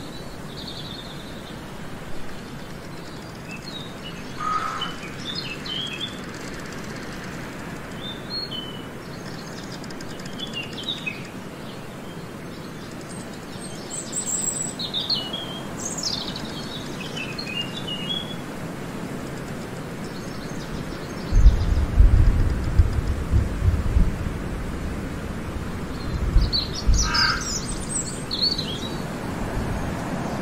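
Outdoor forest ambience: a steady background hiss with scattered short bird chirps and calls. About two-thirds of the way in comes a loud low rumble lasting a few seconds, returning briefly near the end.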